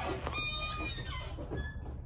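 Fire door's metal hardware squeaking in short, faint squeals as the door swings.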